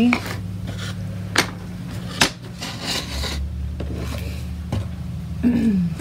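Thin wooden craft cutouts being slid across and set down on a table, with two sharp clacks of wood on wood and a few softer knocks.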